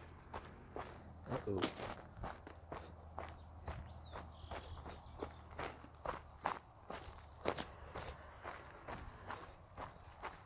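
Footsteps of a person walking steadily over grassy, dry forest ground, about two steps a second.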